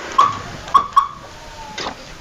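Short electronic chirps from a newly fitted car remote alarm on a Honda City as its key-fob remote is pressed: three quick beeps of one tone in the first second, then a fainter tone fading out, and a short click near the end.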